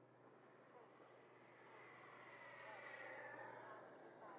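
Radio-controlled model airplane flying past: a faint whine that swells and bends in pitch, loudest about three seconds in, then starts to fade.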